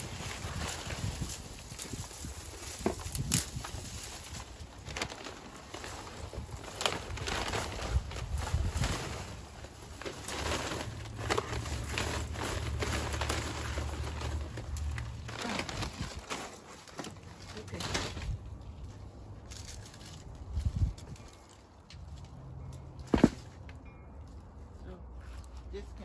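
Dry leaves and dead plant stems rustling and crackling as they are gathered by hand and pushed into a paper yard-waste bag, with one sharp knock near the end.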